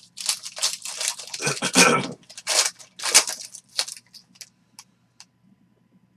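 Shiny foil wrapper of a Panini Origins football card pack being torn open and crinkled: a run of irregular crackling tears, loudest in the first two to three seconds, thinning to a few faint ticks that die away about five seconds in.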